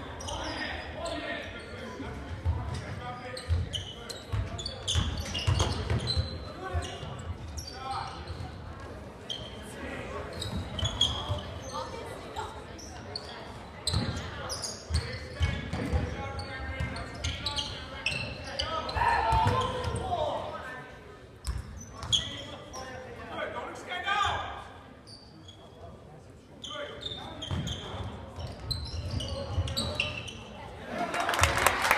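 Basketball bouncing on a hardwood gym floor during play, with players and spectators talking and calling out, echoing in the large gymnasium.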